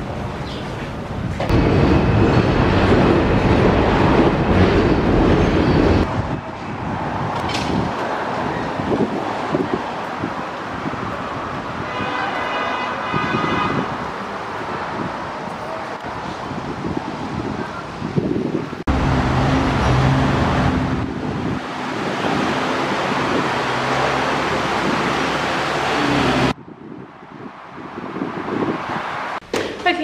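City street traffic noise heard in several short cuts, with a vehicle horn sounding for about two seconds midway through.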